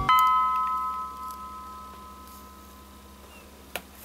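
Background music ending on a chime-like note that rings out and fades over about three seconds, followed by a few light clicks near the end.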